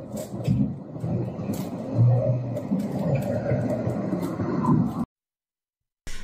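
Street audio from a home security camera's microphone: a low rumbling noise with a few sharp clicks, cutting off abruptly about five seconds in.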